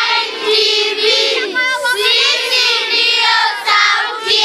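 A group of children singing together, many voices at once, the song pausing briefly between phrases.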